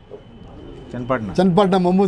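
Domestic racing pigeons cooing: a low, droning call that comes in loud about a second in, mixed with a man's voice.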